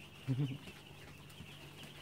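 Faint, steady high-pitched peeping of a crowd of day-old chicks. A brief low human voice sound comes about a third of a second in.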